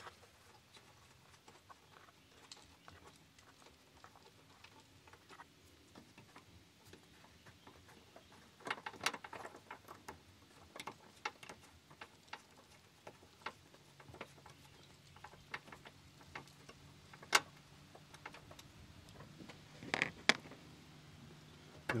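Faint, irregular clicks and clinks of hand tools: a 10 mm socket wrench loosening and removing bolts on the intake parts. There are busier runs of clicking about nine and twenty seconds in, and one sharp click about seventeen seconds in.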